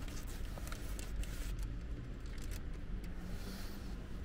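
Paper food wrapper rustling with a few light crinkles and clicks as a hot dog in it is handled, over a steady low hum.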